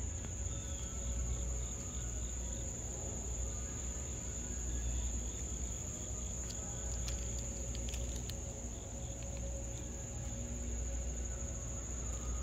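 Insects trilling, one steady high-pitched note that never breaks, over a low rumble.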